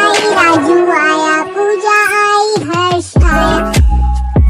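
Hindi nursery rhyme song: a child's voice singing over music. About three seconds in, a deep bass beat comes in under the song.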